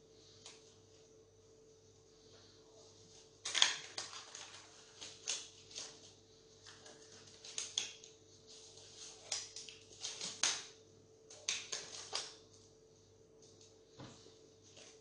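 Thin disposable plastic gloves crinkling and rustling as they are pulled onto the hands, in irregular crackly bursts that start a few seconds in and stop near the end, over a faint steady hum.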